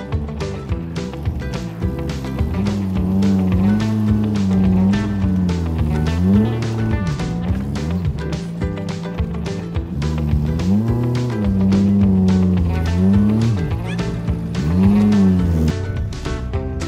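A VW T3 van's engine running and revving up and down several times as the van manoeuvres and backs up, under background music with a steady beat.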